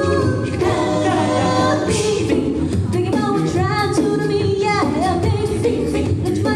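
A six-member a cappella group singing live: a female lead voice over layered backing harmonies, all voices and no instruments.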